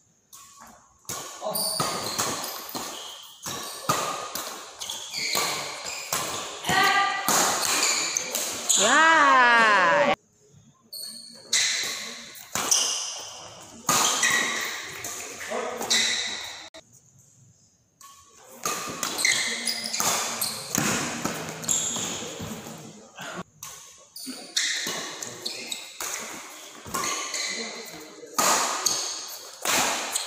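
Doubles badminton play in an echoing sports hall: repeated sharp racket strikes on the shuttlecock mixed with players' voices and calls. A long, wavering shout about nine seconds in is the loudest sound, and the sound cuts out briefly twice.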